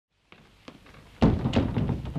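A door shut with a heavy thud about a second in, after a couple of faint clicks, followed by a few softer knocks of movement.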